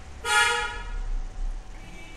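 A vehicle horn honks once: a short, steady-pitched toot of under a second, starting about a quarter second in.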